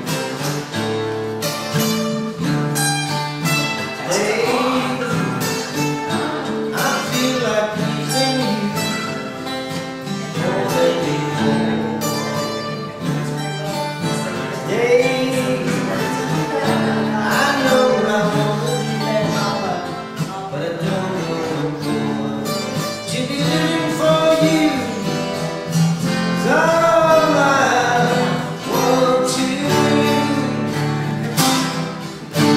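Acoustic guitars strummed together, with singing coming in over them about four seconds in and carrying on through.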